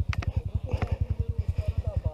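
Trail motorcycle engine running at low revs, a steady rapid putter of about fifteen beats a second, as the bike is eased slowly through a ditch. A few sharp clicks sound near the start.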